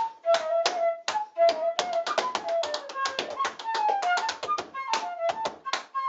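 Tap shoes striking the floor in quick, dense runs of taps, dancing to a flute playing a lively choro melody.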